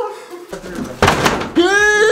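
A door banging loudly about a second in, followed by a man's long yell that rises and then falls in pitch, in a small room.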